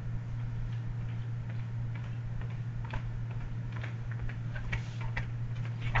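Quiet classroom room tone: a steady low electrical hum with faint, irregular ticks and taps that come more often near the end.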